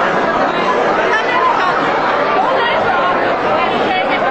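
Crowd chatter: many people talking at once, a steady hubbub of overlapping voices with no one voice standing out.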